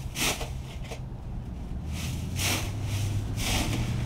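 Dry fallen leaves crunching and rustling underfoot in about four short bursts as a person steps and kicks through a deep pile of leaf litter, over a steady low hum.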